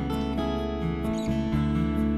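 Background music with acoustic guitar strumming and plucked notes.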